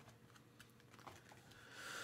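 Near silence: room tone with a few faint, light clicks.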